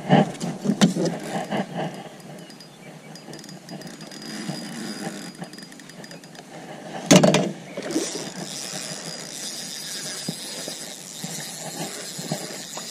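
Splashing and knocking as a hooked pike is fought alongside a kayak: a few sharp splashes in the first couple of seconds, one loud knock or splash about seven seconds in, then a faint steady hiss.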